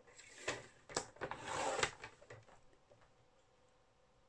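A paper trimmer's scoring blade carriage being run along its rail over patterned scrapbook paper to score a fold line. A couple of light clicks are followed by a short scraping swish about a second and a half in.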